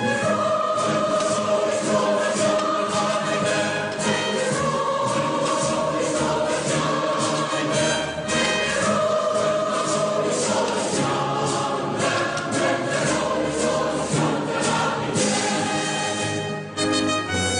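A choir singing a hymn in sustained notes, with repeated scrapes and scoops of shovels in soil over it as the grave is filled in.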